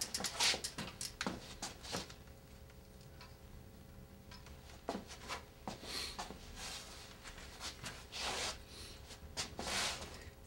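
Faint, irregular soft knocks and rustles from a road bicycle being handled and shifted about on a carpeted floor, coming in a few short clusters.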